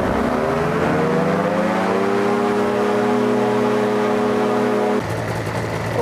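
Powered parachute's engine and propeller run up to full throttle for a static RPM check while the prop pitch is being set, reading about 6,300 rpm. The pitch climbs over the first two seconds, holds steady, then drops suddenly as it is throttled back about five seconds in.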